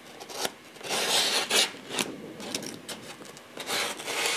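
Props being handled and slid into place on a tabletop set: irregular rubbing and scraping strokes with a few sharp clicks, loudest a little over a second in.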